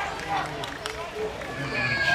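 Men's voices calling out on an open football pitch, with a couple of sharp knocks about halfway through; a louder shout starts near the end.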